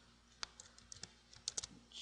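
A few keystrokes on a computer keyboard: a single key click about half a second in, then a quick run of several clicks near the end.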